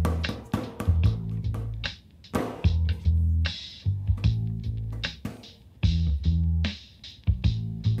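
Background music: plucked guitar over a bass line that moves note to note every half second or so.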